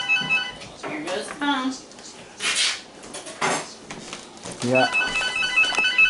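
Telephone ringing twice, a trilling electronic ring about a second long each time, the rings about five seconds apart: an incoming call.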